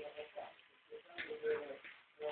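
A small child's short wordless hums, several in a row, the longest a little past halfway.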